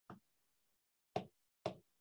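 Three short knocks: a faint one at the start, then two louder ones about half a second apart.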